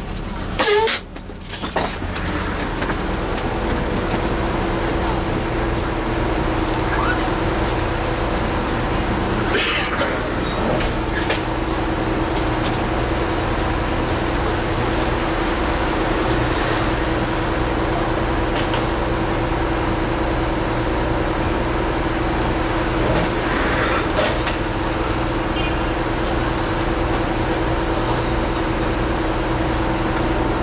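Kuo-Kuang MCI 96A3 coach idling while stopped in traffic, heard inside the cabin: a steady low drone with a constant hum tone. There is a brief dip in level about a second in.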